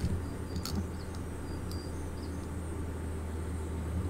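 Faint outdoor ambience from the phone video: a few short, high bird chirps in the first two seconds over a steady low hum.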